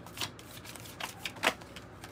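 A deck of tarot cards being shuffled by hand: a few short, soft card snaps and slides, the sharpest about one and a half seconds in.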